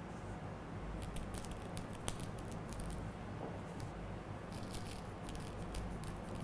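Faint scattered light ticks and rustles from salt being sprinkled onto a glue-coated twig and the twig being handled over a tabletop mat, over a low steady hum.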